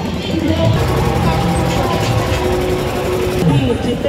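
Street procession din: people's voices and some music over an engine running with a steady mechanical rattle. The mix changes abruptly about three and a half seconds in.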